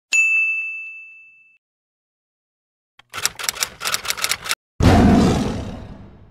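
Title-sequence sound effects. First comes a bright ding that rings out and fades over about a second and a half. A couple of seconds later there is a rapid run of about ten sharp clicks, then a single heavy hit, the loudest sound, whose tail fades away.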